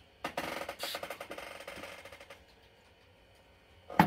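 A rapid run of sharp clicks or taps that starts loud and dies away over about two seconds, then a single click near the end.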